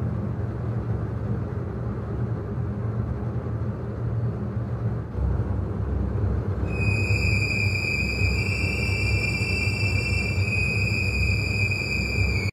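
An ominous low rumbling drone from the film's soundtrack starts suddenly. About seven seconds in, a high, steady, piercing whine joins on top of it.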